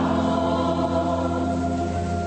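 Choir singing church music, holding a long sustained chord.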